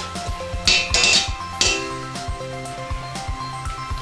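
Background music with held tones over a steady beat.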